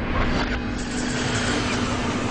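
Steady vehicle noise: a rushing sound that swells about a second in, over a steady low hum.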